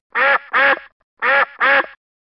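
Duck quacking four times, in two quick pairs.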